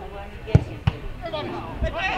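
A football kicked hard on a free kick, a sharp thud about half a second in, with a second thud shortly after, then players shouting.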